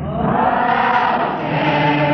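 A congregation singing a hymn together, many voices on one sung phrase that rises and falls, with the orchestra's sustained notes beneath. The recording comes from an old cassette tape and sounds dull, with little treble.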